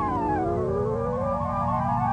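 Early electronic tape music from 1955: several layered tones slide down together, then climb back up in small steps over a steady low drone.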